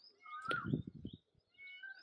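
A faint animal call in the background: a short call that bends in pitch about half a second in, with a few fainter, steadier calls near the end.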